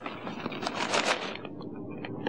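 A handful of small pebbles scraping and rustling together in a palm as they are sorted and counted.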